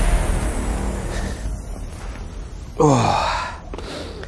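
Electronic music fading out, then about three seconds in a man lets out one sigh that falls in pitch, lasting under a second.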